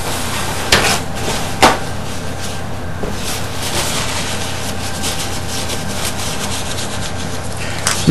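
Paper towel pulled off a roll and rubbed between gloved hands, with two short sharp tearing or crinkling sounds about a second in, over a steady background hiss and hum.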